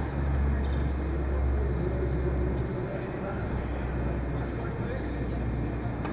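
Indoor tennis court ambience: a low steady rumble that eases about two and a half seconds in, indistinct voices, and a few faint tennis ball hits.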